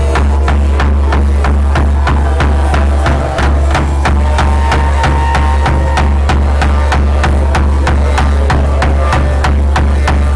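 Hmong funeral drum, a large wooden barrel drum laced with rope and pegs, beaten with a wooden stick in a fast, steady beat. Each strike is sharp, and a deep boom hangs under the beat.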